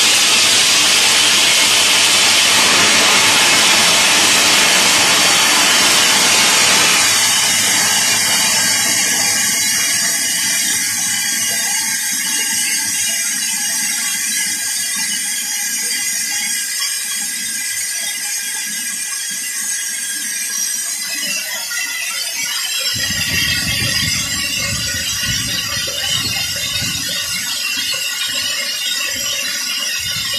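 Steam and hot water blasting from the bottom blowdown valve of a small steam generator's boiler, which is being blown down to flush it clean. The hiss is loud for about the first seven seconds, then eases to a thinner, higher hiss.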